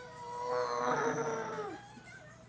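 A young child's long, high-pitched vocal sound held on one steady pitch, growing louder in the middle, then dropping in pitch and stopping just before the end.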